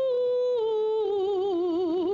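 A woman's solo voice, unaccompanied, holding one long note. About half a second in the pitch steps down a little, and from about a second in it sways in a slow vibrato.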